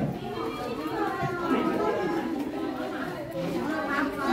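Several people, children among them, chattering indistinctly all at once.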